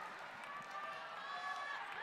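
Faint, steady murmur of a large crowd.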